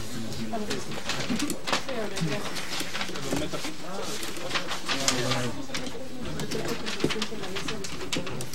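Indistinct voices murmuring in a small room, with papers being handled and rustled on a table.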